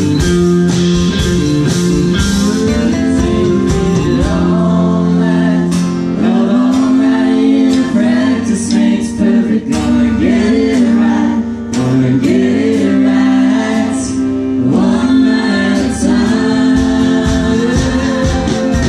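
Live country band playing: acoustic and electric guitars, drums and keyboard. The first few seconds are instrumental, then sung vocals come in about four seconds in and carry on over the band.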